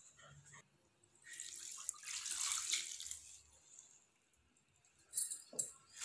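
Milk pouring in a thin stream from a metal bowl into a large pot of grated carrots, a splashing trickle that swells between about one and three and a half seconds in, then thins out. A brief knock near the end.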